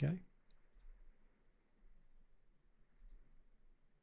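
Faint computer mouse clicks: a few in the first second and a quick pair about three seconds in.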